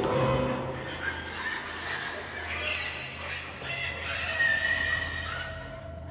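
Scattered animal calls over a low, steady droning music bed.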